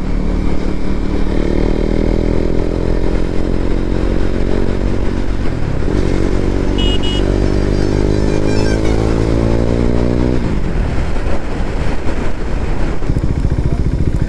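KTM Duke 390 BS4's single-cylinder engine through its stock exhaust, accelerating hard. Its pitch climbs, dips briefly at an upshift about six seconds in, and climbs again. It drops away when the throttle closes about ten seconds in.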